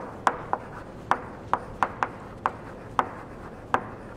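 Chalk writing on a blackboard: a run of sharp taps as the chalk strikes and strokes the board, about nine in four seconds at an uneven pace.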